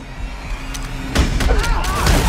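Action-film sound effects: a low drone, then a heavy impact a little over a second in, followed by wavering, screeching sounds of a car.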